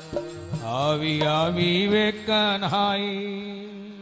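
Devotional bhajan music: a wordless sung line glides upward and wavers over a steady held harmonium note, with no drumming, and the sound fades toward the end.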